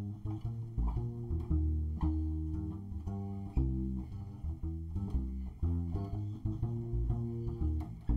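Upright double bass played pizzicato on its own: a line of plucked low notes, about two or three a second, each ringing and fading before the next.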